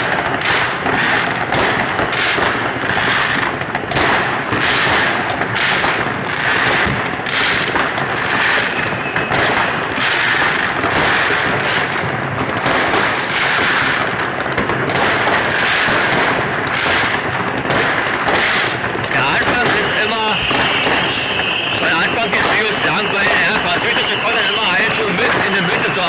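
Dense New Year's fireworks: rockets and firecrackers banging and crackling all together without pause. From about twenty seconds in, a steady high tone runs over the crackle.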